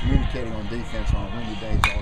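A man talking, with one short, sharp crack near the end.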